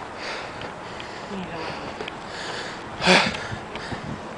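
Heavy breathing of someone out of breath from climbing a steep hill: repeated breaths, with one loud, sharp intake or sniff about three seconds in.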